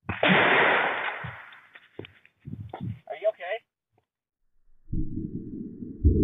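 A single loud shot about a quarter second in, its echo dying away over a second and a half. A few short knocks and a brief voice follow, and a low steady rumble sets in near the end.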